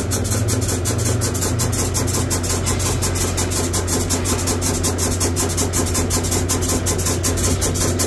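Volvo truck's diesel engine idling steadily, with an even ticking about five times a second over it.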